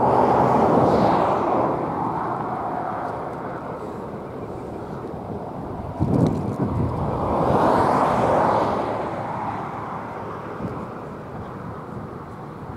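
Road vehicles passing close by, twice: each one's tyre and engine noise swells up and fades over a couple of seconds, the first at the very start and the second around eight seconds in. A sudden low thump comes just before the second pass, about six seconds in.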